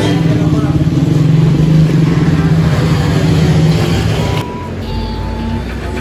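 A motor vehicle engine idling nearby, a steady low hum that cuts off abruptly about four and a half seconds in, leaving quieter background with a brief high tone.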